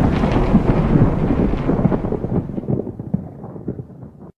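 A deep rumble with scattered crackles, like rolling thunder, dying away over a few seconds as its higher part fades first.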